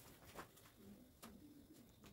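Near silence: faint pencil strokes on paper, with a faint low cooing bird call in the background about a second in.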